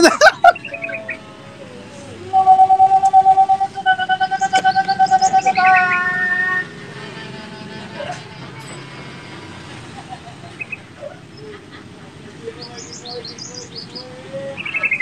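A loud, steady, pulsing pitched call from about two to six and a half seconds in, then quieter high bird chirps near the end.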